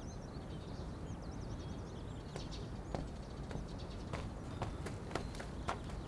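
Birds chirp briefly at first. Footsteps follow, crunching on gravel, starting about two seconds in and coming faster and more often toward the end.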